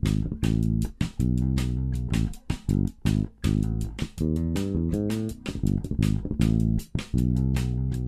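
Fender Jazz Bass electric bass playing a forró groove: a run of short plucked notes in a bouncing rhythm, broken by brief pauses between phrases.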